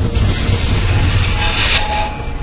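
Logo-reveal sound effect: a loud rushing whoosh over a deep rumble, with a hiss that brightens about one and a half seconds in.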